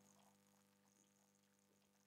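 Near silence with only a faint steady electrical hum.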